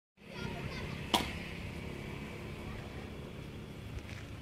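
A single blow of a hewing blade biting into a timber log, one sharp chop about a second in, over a low steady background noise.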